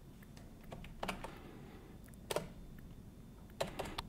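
A few faint, separate key presses on a computer keyboard, spaced irregularly: the command being entered in a terminal.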